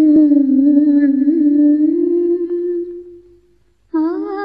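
A woman humming one long, slightly wavering note, nearly unaccompanied, which fades away a little past the middle; a fresh sung phrase with wide vibrato starts right at the end. It is the wordless opening of a Malayalam film song.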